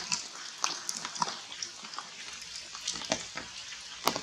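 Rain on forest foliage: a steady hiss with irregular drips and ticks on the leaves.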